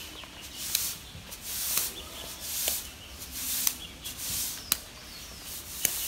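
Shuttlecock (jianzi) being kicked back and forth: a light tap about once a second, each with a short hissing swish around it.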